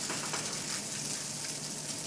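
Crumbled tofu frying in a hot pan: a steady, even sizzle.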